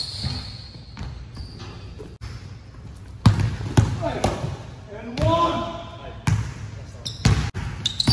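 Basketball bouncing on a hardwood gym floor: a handful of separate sharp bounces, most in the second half, in a large indoor gym. A brief voice call is heard between them.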